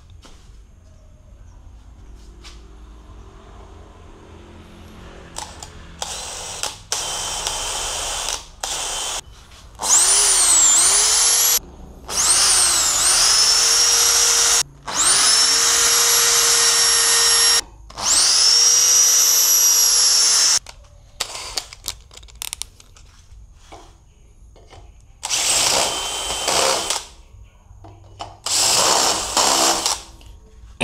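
Cordless drill running in a series of trigger bursts while drilling mounting holes in a motorcycle's rear rack. The motor whines up to speed at the start of each run and dips in pitch as the bit bites. The longest, loudest runs come in the middle, with shorter ones before and near the end.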